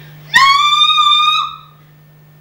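A loud, shrill, high-pitched cry held for about a second, scooping up in pitch at the start and dropping off at the end: a performer shouting out in a squeaky character voice.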